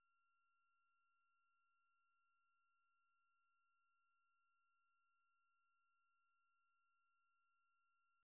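Near silence, with only a barely audible steady high tone.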